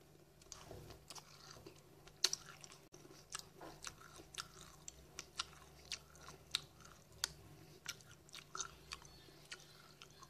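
Close-up chewing of a mouthful of crunchy cereal with granola clusters: short sharp crunches come about two a second at an uneven pace, the loudest about two seconds in.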